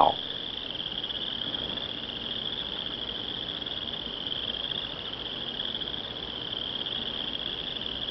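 Crickets chirring in a steady, high-pitched, continuous trill.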